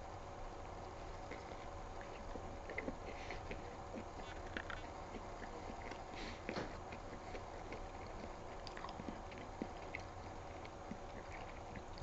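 Close, faint chewing of a mouthful of burger, scattered soft clicks and smacks of the mouth over a steady low hum.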